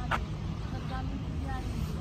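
Steady low rumble of idling vehicle engines, with a few faint distant voices.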